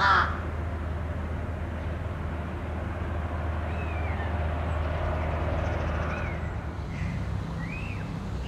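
A single loud, short caw from a crow-family bird right at the start, then a few brief whistled chirps from small birds over a low steady hum that drops away about six and a half seconds in.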